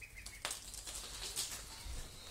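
Ducklings peeping briefly near the start, followed by a few sharp light taps and scuffs.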